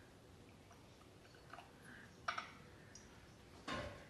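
Light clicks and knocks of a glass jar and a gooseneck kettle being handled on a kitchen counter. A sharp click comes a little past two seconds in, and a louder short clunk near the end as the kettle is set down on the stove.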